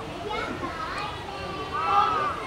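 Children's voices chattering and calling, with a high-pitched voice rising and falling near the end.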